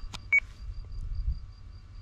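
A short electronic beep about a third of a second in, just after a click, over a faint low rumble and faint rapid high pips.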